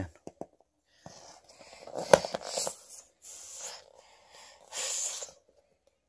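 Several breathy puffs of blown air with a sharp click about two seconds in.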